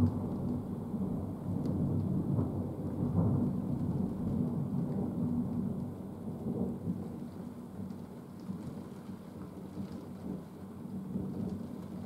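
Thunder rumbling and slowly dying away over several seconds, with rain falling.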